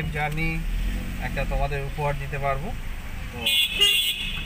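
Voice over a low street rumble, then a short, high-pitched vehicle horn toot near the end.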